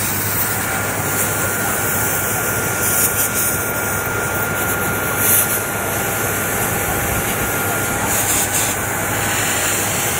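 Compressed air jetting from an air-hose nozzle into a desktop computer case: a loud, steady hiss with short louder spurts about three and five seconds in.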